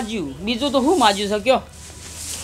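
A man's voice speaking in Gujarati with wide swings in pitch, stopping about one and a half seconds in.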